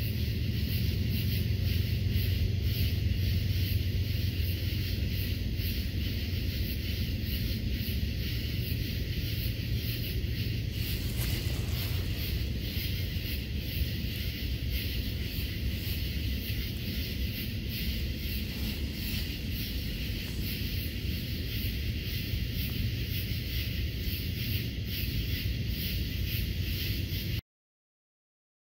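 Evening insect chorus, a steady fast pulsing in the high range, with wind rumbling on the microphone underneath. It cuts off suddenly near the end.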